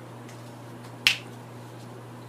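A single sharp click about a second in, over a steady low hum.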